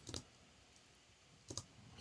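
Near silence broken by a few faint clicks of computer input: one just after the start and a quick pair about one and a half seconds in.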